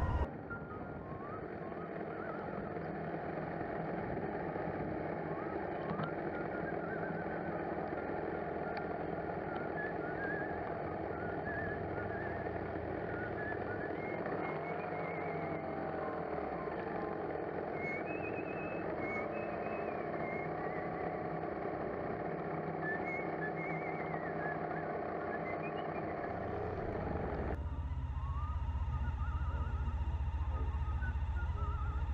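A motorcycle riding at low speed, its engine running under wind and road noise, heard from a camera mounted on the bike. The engine note rises and falls briefly about halfway through, then holds steady.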